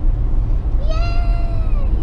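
Steady low rumble of a moving car heard inside the cabin. In the middle a young girl's voice holds one long, high note for about a second.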